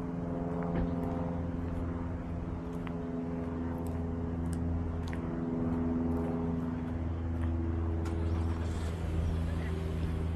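A steady low mechanical hum holding several pitches at once, unchanging throughout, with faint scattered ticks over it.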